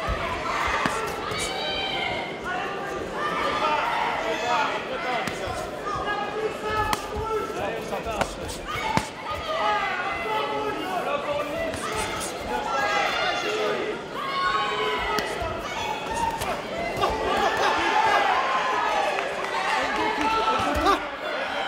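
Shouting from the crowd and the fighters' corners at a kickboxing bout, over the thuds of punches and kicks landing on gloves, shin guards and bodies, with a few sharp impacts standing out.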